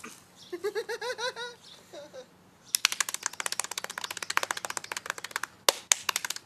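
A short burst of laughter, then a fast run of sharp skin slaps, about ten a second, from hands slapping a bare belly, with a couple of louder slaps near the end.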